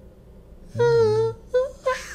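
A man humming along to a melody: one held note of about half a second, then two short notes near the end.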